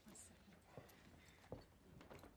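Near silence, with two faint short knocks, the second a little louder, over a low room hum.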